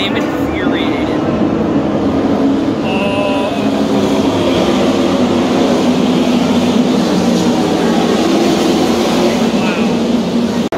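A field of NASCAR Xfinity Series stock cars' V8 engines running on the track, heard as a loud, steady drone of many overlapping engines.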